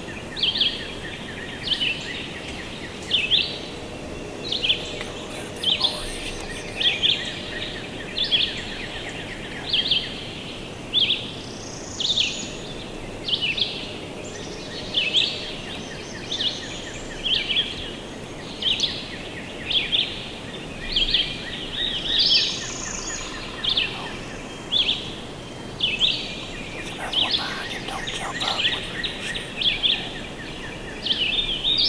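Small songbird calling over and over, short sharp high chirps about once or twice a second, over steady woodland background noise.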